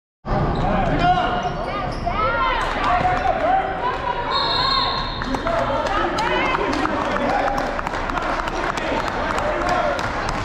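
A basketball bouncing repeatedly on a hardwood gym floor during play, with short high squeaks of sneakers on the floor and players' voices.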